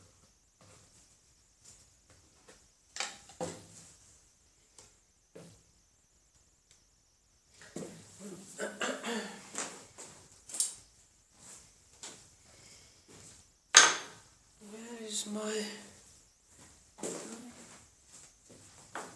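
Hard objects knocking and clinking as they are handled, with one sharp clink or knock about fourteen seconds in. Low, murmured speech comes and goes around it.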